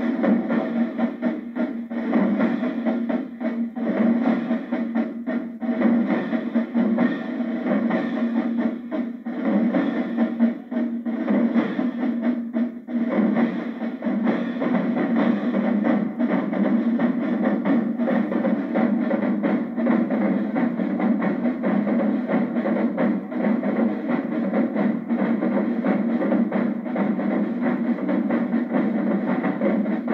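Marching-band drum line playing together: snare drums, bass drums and hand-held crash cymbals in a loud, continuous cadence of rapid strokes and cymbal crashes.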